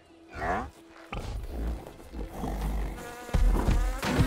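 Cartoon bee buzzing, a dense steady buzz from about a second in. A loud deep rumble comes in near the end.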